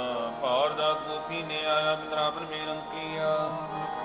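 Sikh kirtan: a male voice sings a wavering devotional phrase about half a second in, over the held notes of a harmonium.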